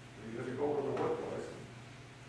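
A man's voice speaking for about a second, fading out in the second half; the words are indistinct.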